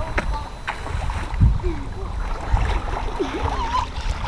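Uneven low rumble of wind buffeting the microphone outdoors, with faint children's voices in the distance.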